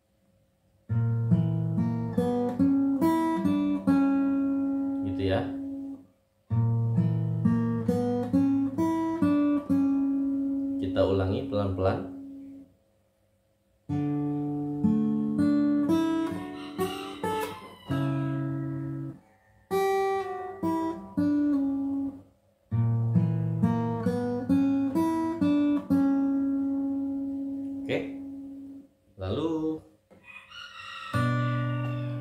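Steel-string acoustic guitar fingerpicked in an arpeggio pattern: a bass note, then single notes picked one after another on the higher strings and left to ring. It plays in five phrases of a few seconds each, each breaking off suddenly into a short silence.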